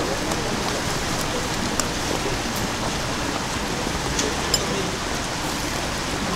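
Shallow water flowing steadily over the bed of a narrow concrete-lined river channel, an even rushing sound, with a couple of faint clicks.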